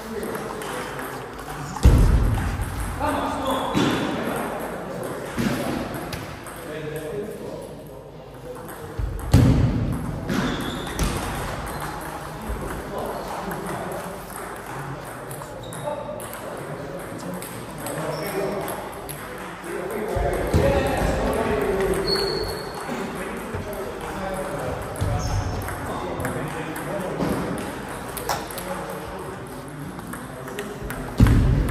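Table tennis rallies: the celluloid-type ball clicking off rubber bats and the table in quick exchanges, with occasional low thumps. Voices talk in the background.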